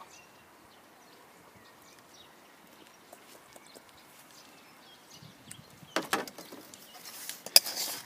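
Stainless steel bowls and metal tongs clinking: after a quiet stretch, a few sharp metal knocks about six seconds in and again near the end, the loudest just before the end.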